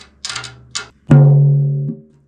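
Drum head tapped lightly a few times, then struck firmly about a second in: one clear pitched note that rings and fades for most of a second before a hand mutes it. The batter head has just been tightened back up, and the tuner reads a fundamental of about 142 Hz.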